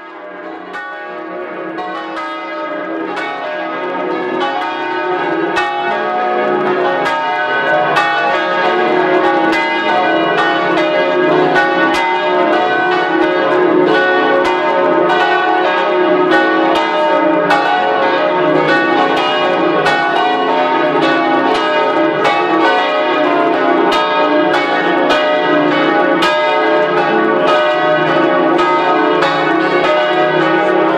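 Church bells pealing from the bell tower, several bells struck in quick succession so that their ringing tones overlap in a continuous clangour. The sound swells up over the first few seconds and then rings on steadily and loudly.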